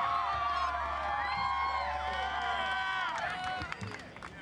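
Audience cheering and whooping, many voices at once, dying away about three and a half seconds in.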